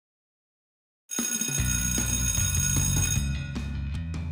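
Silence for about a second, then music starts suddenly with a bright, steady ringing over a low bass. The ringing fades about three seconds in, leaving sharper, struck notes.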